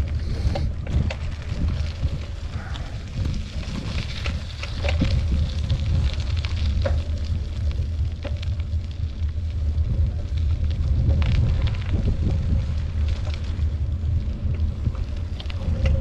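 Wind buffeting the microphone in a steady low rumble while riding a bicycle over a rutted dirt street, with scattered knocks and rattles from the bumps.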